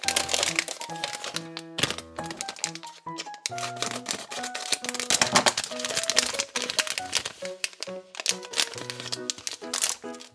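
Foil blind bag crinkling and crackling continuously as it is opened and handled, over background music with light melodic notes.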